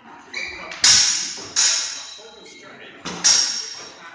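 Steel longsword blades clashing in sparring: several sharp clangs, the loudest about a second in, each ringing briefly and echoing in a large hall.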